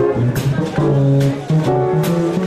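Upright piano played in a swing jazz style, chords and melody over a moving bass line.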